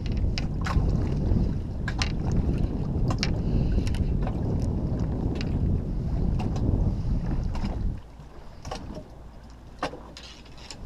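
Wind buffeting the microphone as a heavy low rumble that drops away about eight seconds in, with scattered sharp clicks and knocks through it.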